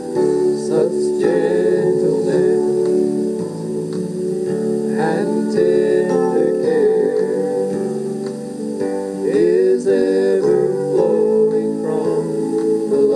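Gospel song played from a home-recorded audio cassette through a portable cassette player's speaker: two men singing a duet over guitar accompaniment.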